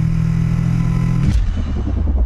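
Motorcycle engine running at steady revs, heard from onboard the bike. About a second in it cuts off and gives way to a deep electronic rumble with a fast, even pulse.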